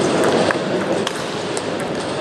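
Table tennis ball being hit back and forth in a rally: a few sharp clicks of ball on bat and table over the steady background noise of a sports hall.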